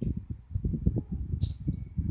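Khao Manee cat growling in low, uneven pulses, with a short hiss about one and a half seconds in.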